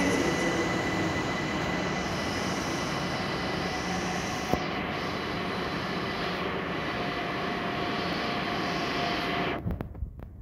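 Steady rumble and hiss of an electric train in a covered station, with a thin whine over it for the first couple of seconds, easing a little and then cutting off suddenly near the end.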